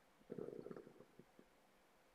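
Near silence, broken by a brief faint low gurgle about a third of a second in, lasting under a second.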